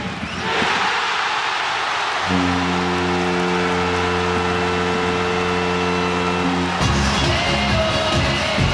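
Ice hockey arena crowd cheering as a goal is scored, with the arena's goal horn sounding one long steady tone from about two seconds in for some four seconds. Goal music starts right after the horn, near the end.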